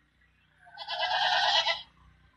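A single bleat from a sheep or goat, a wavering call about a second long that starts nearly a second in.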